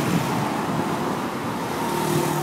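Steady outdoor background noise with a faint low hum running under it.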